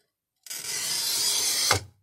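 Toyo TC90 glass cutter's wheel scoring glass wetted with kerosene, drawn along a square: a steady gritty hiss lasting a bit over a second, ending in a short knock.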